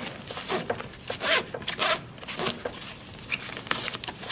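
Car seat harness straps being pulled out through the fabric seat pad, with several short, irregular rustling swishes of webbing and fabric.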